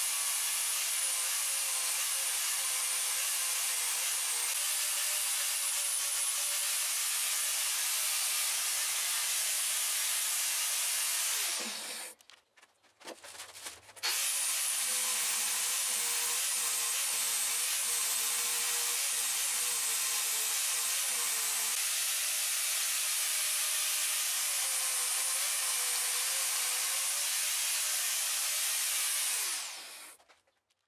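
Angle grinder grinding a weld bead flush on a steel plate, a steady grinding whine. About twelve seconds in it spins down with falling pitch, starts again sharply two seconds later, and spins down again near the end.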